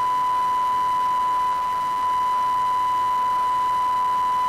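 Broadcast line-up test tone on a news agency's feed audio circuit: a single steady 1 kHz sine tone held at constant level over faint hiss.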